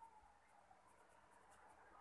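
Near silence, with faint short scratches of a paintbrush stroking paint onto paper.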